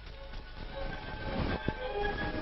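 Background music over a low, steady vehicle-like rumble, with a couple of sharp clicks about one and a half seconds in.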